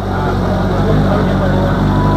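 CFMOTO 500SR Voom's inline four-cylinder engine idling steadily.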